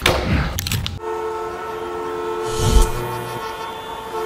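A loud held horn chord of several steady tones, starting about a second in and lasting about three seconds, with a short whoosh and low thud partway through.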